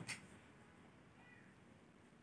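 Near silence: room tone, with one short click right at the start and a faint, brief high gliding call a little over a second in.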